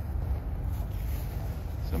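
Low, steady wind rumble on the microphone.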